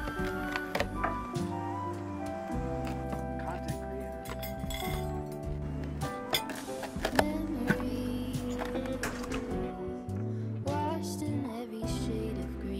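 Background music with a steady tune, with scattered sharp clinks of a knife and cutlery against a cutting board and plates.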